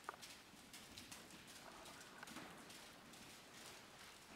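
Faint hoofbeats of a horse trotting on arena sand, an even, steady rhythm of soft footfalls.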